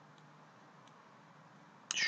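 Quiet room hiss with two faint, brief clicks of a computer mouse in the first second; a man's voice starts right at the end.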